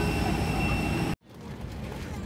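Steady jet airliner noise heard on the airport apron: a loud low rumble with a thin high whine. It cuts off abruptly a little over a second in and gives way to a quieter steady cabin hum.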